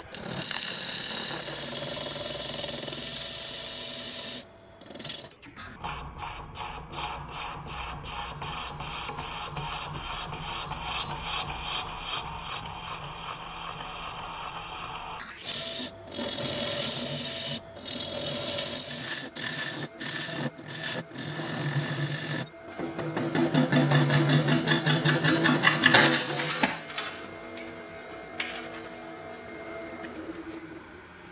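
Wood lathe spinning an epoxy resin bowl blank while a gouge cuts and scrapes it, in several short takes. Some stretches carry an even run of rapid ticks. Background music plays underneath.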